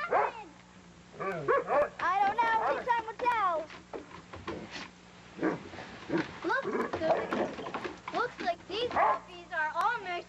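Two Doberman dogs play-fighting, barking and yipping over and over in short calls.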